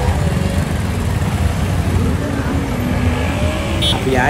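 Steady low rumble of a motor vehicle's engine and road noise, with faint voices in the middle.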